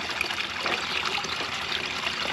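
Small garden-pond waterfall spilling steadily off a stone ledge into the pond.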